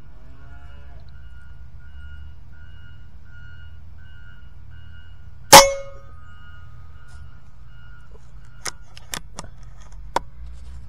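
A single sharp shot from an Evanix Rainstorm SL .22 air rifle, unregulated, about five and a half seconds in, with a brief ringing after it. About three seconds later come a few quick sharp clicks of handling.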